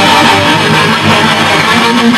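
Two electric guitars playing a rock song together, loud and continuous.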